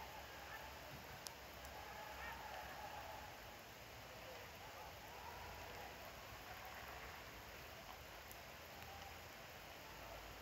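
Quiet outdoor background with faint, distant voices and one small sharp click about a second in.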